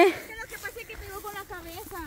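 Faint voices of people talking, quieter than the close speech around them, with no other distinct sound.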